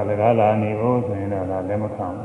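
A Buddhist monk's voice intoning in a drawn-out chanting cadence, with the pitch held and wavering. It is typical of a Pali recitation within a Dhamma talk. The chanting fades near the end.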